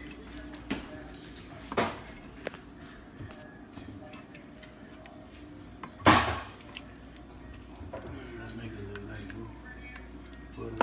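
A wooden spoon knocking and scraping against the stainless steel inner pot of an Instant Pot while mashing cooked red beans, with a few sharp knocks, the loudest about six seconds in.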